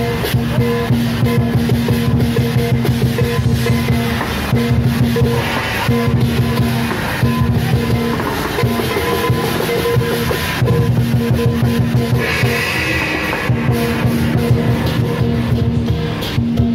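Percussion music: drums beaten in a fast, even rhythm with cymbals, over sustained tones that drop out and return every few seconds.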